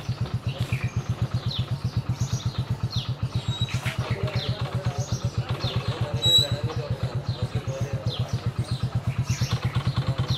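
A vehicle engine idling, with a steady low throb at about seven beats a second. Short high chirps, like birds, sound above it throughout.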